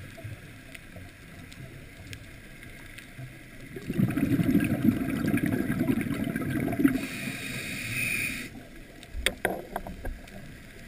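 Underwater recording through a camera housing: a scuba diver's exhaled bubbles burble loudly for about three seconds, about four seconds in, followed by the hiss of an inhaled breath through the regulator. A few sharp clicks come near the end.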